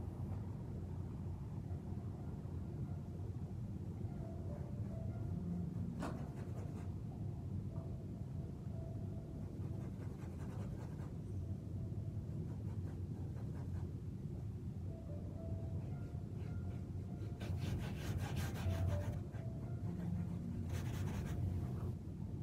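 Faint scratchy rubbing of a small paintbrush working oil paint on a stretched canvas, in a few short spells, over a steady low room hum.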